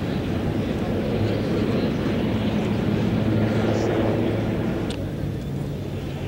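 Marine One, a Sikorsky VH-3D Sea King helicopter, flying away with a steady rotor and turbine drone that grows a little fainter near the end.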